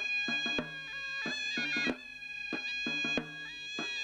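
Traditional Azerbaijani yallı dance music: a held, reedy melody over a steady drone, with drum strikes in a repeating dance rhythm.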